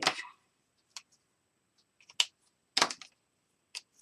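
Several sharp little clicks and taps, about five in four seconds, as fineliner drawing pens are picked up and handled.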